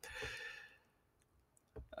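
A faint breath from the narrator in the pause between sentences, then quiet, and a small click just before he speaks again.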